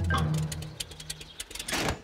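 Cartoon crash sound effects as a boat jams against a bridge. A low hum dies away under scattered clicks and rattles, then one loud clatter comes near the end.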